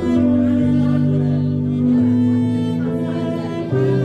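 A cello and piano duo playing live: the cello is bowed in long, sustained notes over chords from a digital stage piano, with the lower notes changing about once a second.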